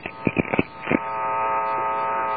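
A short laugh and a few clicks over a telephone line, then from about a second in a steady buzzing hum on the line once the talk stops.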